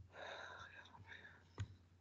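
A faint voice, muttering or whispering, with a single sharp click about one and a half seconds in, a computer mouse click dismissing an on-screen dialog.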